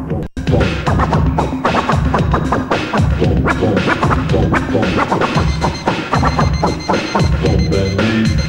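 Vinyl record scratching and cutting on a turntable with a Stanton 500 cartridge: quick back-and-forth strokes and chopped sounds over a steady drum beat, with a brief cut to silence at the very start.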